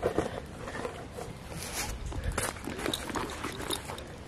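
Handling noise as a camera is carried and set down on the ground: irregular scuffs, knocks and footsteps.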